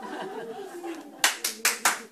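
Four quick, sharp hand claps in a row, a little past the middle.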